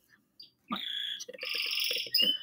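A pet bird singing: after a short quiet start, a run of quick high chirps and trills begins well under a second in and keeps going.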